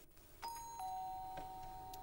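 Two-tone electric doorbell chime ringing once. A high note sounds about half a second in, then a lower note joins it, and both ring on steadily.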